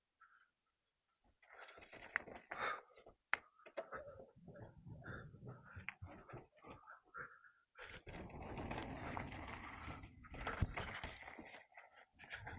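Mountain bike ridden down a dirt trail: irregular clicks, rattles and knocks from the bike and its tyres over the rough ground and a wooden plank bridge. They start about a second in and run together into a denser rushing stretch near the end.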